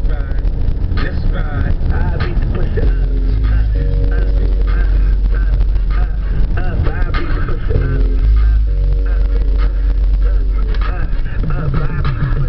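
Hip-hop playing loud on a car stereo inside the moving car's cabin, with heavy bass, a repeating synth chord pattern and a voice over it.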